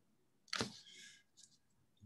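Near silence, broken once about half a second in by a short soft click with a brief faint tail.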